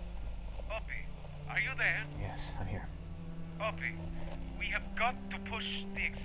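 Speech over a telephone line: a voice on the other end of the call, thin and tinny, in short phrases over a steady low hum.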